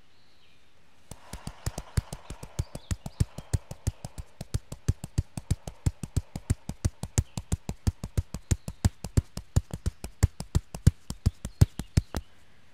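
Gentle fists tapping on the chest over the heart: a steady, even run of taps, about five a second, starting about a second in and growing a little louder over time.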